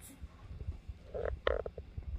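Mouth sounds from beatboxing: low rumbling and thumping, with a few short voiced pops a little over a second in.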